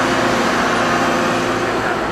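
Hydrema MX14 mobile excavator's diesel engine running at a steady pitch while its hydraulics work the Engcon tiltrotator and bucket.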